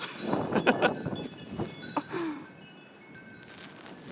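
Wind chimes tinkling, several high notes ringing at once and dying away. A person laughs in the first second.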